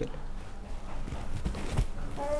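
Low background noise with a few faint, short knocks in the second half.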